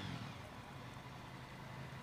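A pause in the speech: a faint, steady low hum under a light background hiss.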